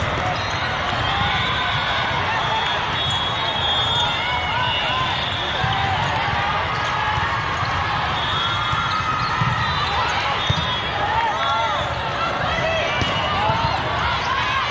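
Busy volleyball hall: sneakers squeaking on the sport court floor and volleyballs being struck and bounced, over a constant babble of voices.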